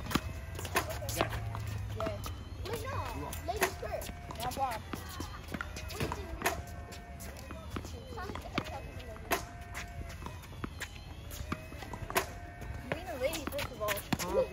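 Tennis balls struck by rackets and bouncing on a hard court, sharp knocks at irregular intervals, among children's voices.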